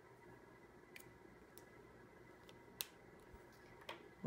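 Near silence with a few faint clicks, the sharpest about three seconds in, of felt-tip markers being handled: a cap pushed back on and a marker set down.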